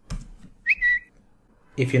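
A single key click, then a brief high whistle-like tone that steps down slightly in pitch and stops after about half a second.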